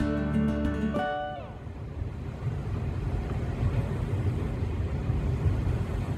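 Background music stops about a second in with a falling pitch slide. After it comes an uneven, low rumbling noise aboard a moving car ferry.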